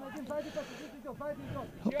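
Faint, distant voices of people calling out on a football pitch, in short overlapping shouts.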